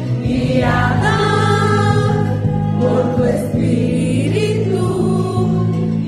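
Background music: a choir singing a Christian worship song over held instrumental chords.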